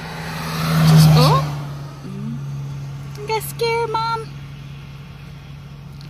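A vehicle passing by on the highway, swelling to its loudest about a second in and fading away, over a steady low engine hum.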